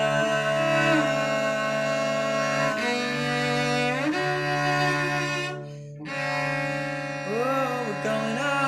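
Cello playing slow, sustained bowed notes over a steady low drone, with a brief dip in level about six seconds in and sliding notes near the end.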